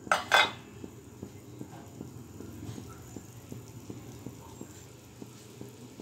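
A metal utensil clanks twice against a wok right at the start, then bean sprouts cook in the hot wok with a low steady sound and faint scattered crackles.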